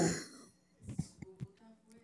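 A man briefly clears his throat, with small breathy and mouth clicks close to a microphone, just after the end of a spoken phrase.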